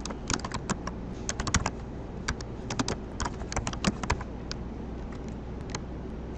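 Typing on a computer keyboard: a quick, uneven run of keystrokes through the first four seconds, then a few scattered strokes, over a steady low hum.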